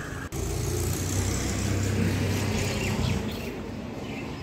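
A motor vehicle passing by: a low, steady engine drone that swells through the middle and then fades.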